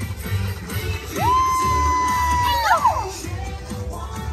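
Parade music from a passing float over crowd noise and cheering. A single voice holds one high note for about a second and a half, then slides down.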